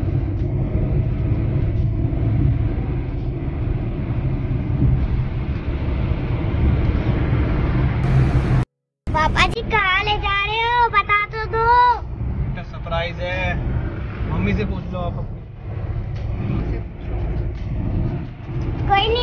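Steady low road and engine rumble inside a moving car's cabin. After a brief cut about nine seconds in, a high, wavering voice sings or calls out over the rumble, in several short stretches.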